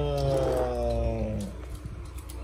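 A person's long drawn-out vocal sound, one held tone whose pitch rises slightly and then slowly falls, fading out about one and a half seconds in, followed by a few faint clicks.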